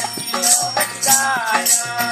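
Folk song: a voice singing with pitch glides over rhythmic percussion that has a rattling shake about twice a second.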